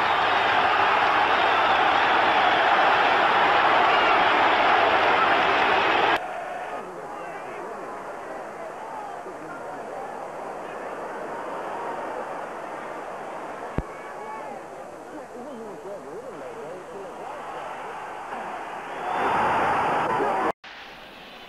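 Football stadium crowd cheering loudly after a goal, cut off suddenly about six seconds in. A much quieter crowd hubbub follows, with a single click past the middle, swelling again near the end.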